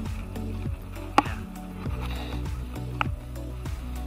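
Background music with a steady beat about twice a second. A sharp click sounds about a second in, with a brief "yeah", and a smaller click near the three-second mark.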